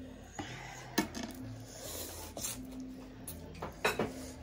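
Eating sounds at a table: metal chopsticks clicking against ceramic plates, with two sharper clicks about a second in and near the end, and shrimp being peeled and noodles handled by hand.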